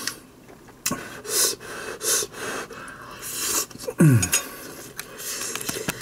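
Eating noises of a person working through a mouthful of fried rice: breathing and sniffing through the nose between bites, with a single click of a metal spoon on a glass bowl about a second in. About four seconds in comes a short hum that drops sharply in pitch.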